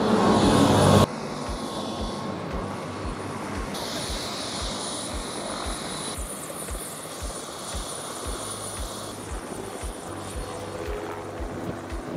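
Turbine helicopters running on a heliport pad, their rotor blades beating in a regular low thudding of about three pulses a second over a steady engine noise.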